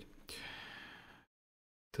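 A man's breath into a close microphone, about a second long and fading out.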